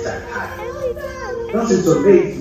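Indistinct chatter of several young people talking over one another, no single voice clear.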